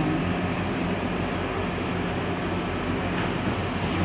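Steady low hum and hiss of an air conditioner running, unchanging throughout.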